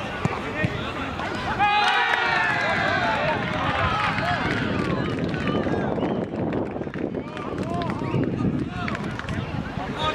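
Several men's voices shouting at once on an outdoor football pitch, loudest in a burst of overlapping calls about two seconds in, then scattered shouts with a few sharp knocks.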